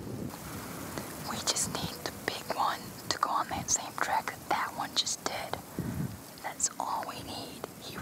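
Whispered speech: a person whispering in short phrases.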